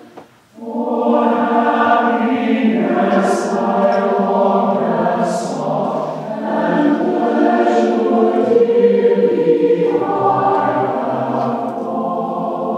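Mixed-voice choir of men and women singing a sustained choral piece, with a short breath pause between phrases about half a second in and sung 's' consonants cutting through now and then.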